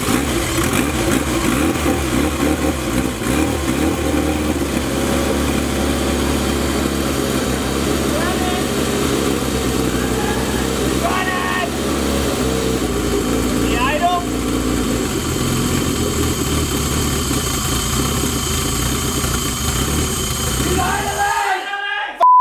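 Turbocharged Honda B18 four-cylinder engine running steadily at idle on its first start-up after the build, the idle set a little low. It shuts off suddenly near the end.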